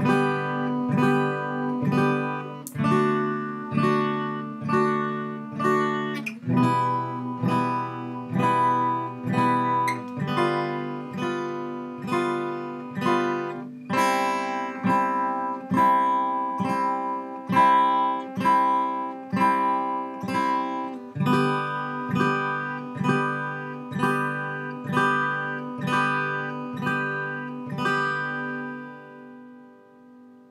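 Acoustic guitar strummed in a steady rhythm, about one strum a second, working through a progression of basic open chords (G, C, D, E minor) and changing chord every few strums. The last chord is left to ring and fades out near the end.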